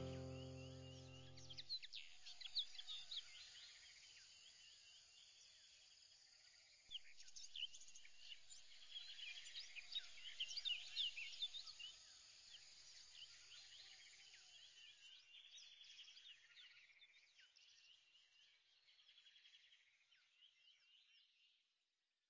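A music track's last chord dies away in the first two seconds. Then faint birdsong follows, many short high chirps and whistles, thinning out and stopping just before the end.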